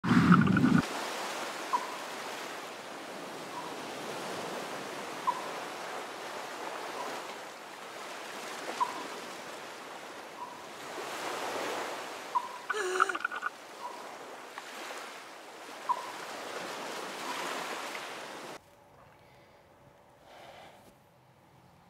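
Water ambience of waves or surf swelling and ebbing, opening with a heavy low hit. A short high blip sounds about every second and three-quarters, and a brief wavering tone comes about two-thirds of the way through. The water sound cuts off suddenly near the end.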